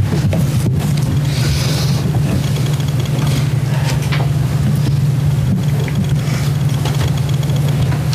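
Steady low hum that does not change, with faint room noise and a few soft clicks over it.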